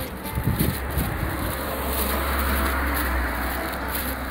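A motor vehicle passing on the street: tyre and engine noise swelling about two seconds in and easing off, over a steady low rumble.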